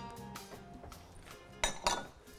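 Soft background music, then near the end a couple of sharp clinks of a utensil against a glass mixing bowl.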